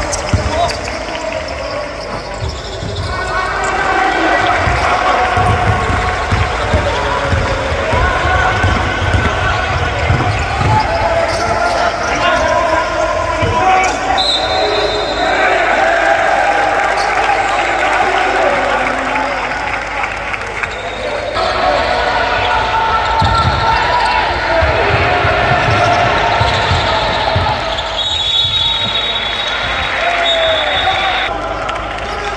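Game sound from an indoor basketball court: a basketball bouncing on the wooden floor and players' voices calling out in the hall. A short shrill referee's whistle sounds about halfway through and again near the end.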